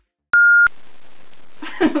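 A short electronic beep: one steady high tone lasting under half a second. It is followed by the steady hiss of a room recording and a brief laugh near the end.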